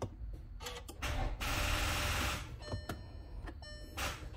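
A start attempt on a 2018 VW Atlas with a dead battery. A few clicks are followed by about a second and a half of rushing noise, then a series of short electronic warning chimes from the dashboard as the instrument cluster lights up.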